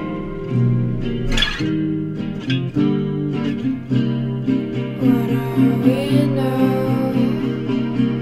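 Song with plucked guitar notes repeating throughout; about five seconds in, a higher held, wavering part and some high shimmer join in.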